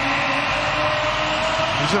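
Basketball arena crowd cheering steadily just after a home-team dunk, a sustained din of many voices.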